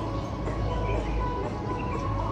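Dance music playing steadily for a group zumba workout, with a held melody over a steady low bass.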